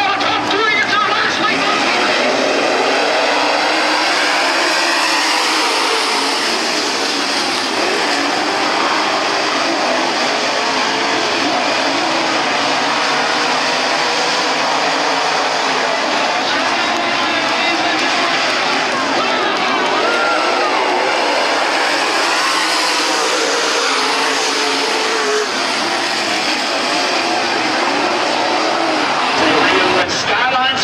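A field of dirt late model race cars' V8 engines running together as the pack circles the dirt oval before the green flag, engine notes rising and falling as the cars pass.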